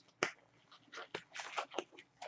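Disposable gloves being pulled onto the hands: a sharp snap about a quarter second in, then a string of shorter snaps and rustles as the gloves are worked on.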